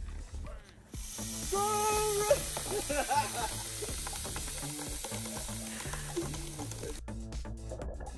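Mentos-and-cola geysers spraying from two soda bottles with a steady hiss, over background music with a beat. The hiss starts about a second in and cuts off suddenly about seven seconds in.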